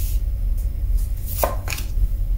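Tarot cards being slid and laid down on a wooden tabletop, with two quick card slaps about a second and a half in, over a steady low hum.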